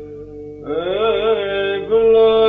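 Byzantine chant in the plagal second mode: a steady drone note (ison) holds through a short pause in the lead chanter's voice. The voice re-enters about two-thirds of a second in, sliding upward into an ornamented, wavering melodic line. It is an old recording with the treble cut off.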